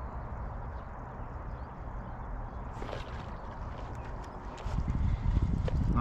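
Steady, fairly quiet outdoor background noise. About three-quarters of the way in, a louder low rumble with small uneven knocks sets in.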